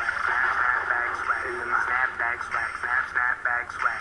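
A chopped, rapidly repeated vocal sample in an electronic dance track. It sounds thin and radio-like, with little bass or treble.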